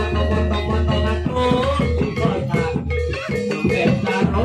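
Loud music with a steady deep bass line, pitched melody notes and regular drum strokes.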